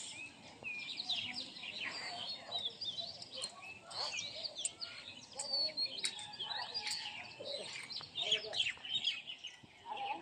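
Many small birds chirping and twittering at once, an overlapping run of short high calls with no break.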